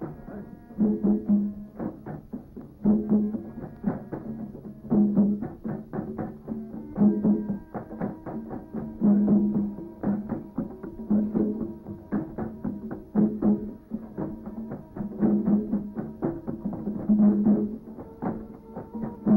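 Drum played in a steady repeating rhythm: a loud low beat about every two seconds, with quicker, lighter strokes between.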